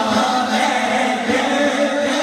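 Male voice singing a naat into a microphone over a hall PA system, in long, held, wavering melodic phrases.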